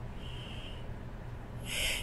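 A woman drawing an audible breath in, rising in the last half second, over a faint low room hum.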